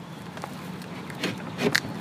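A few light knocks and clicks from the wooden hive box being handled and fitted onto its wall mount, loudest in a quick cluster in the second half.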